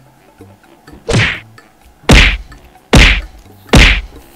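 Four hard hand slaps, about one a second, the last three louder with a heavy thud, in a show of frustration.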